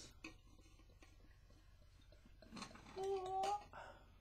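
German beer poured slowly from a bottle into a tall wheat-beer glass: a quiet trickle with faint ticks. About two and a half seconds in comes a louder stretch with a short, steady hum lasting about half a second.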